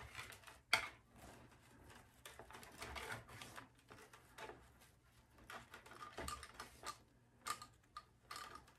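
Ribbon being handled and looped into a Bowdabra bow maker: faint, irregular rustling and crinkling of metallic ribbon, with scattered light clicks.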